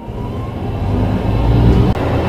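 Vehicle engine sound effect for a Lego space rover driving off, a noisy motor sound growing steadily louder.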